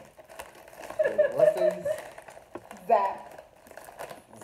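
A woman laughing along with brief indistinct talk, with light crinkling of a snack bag between.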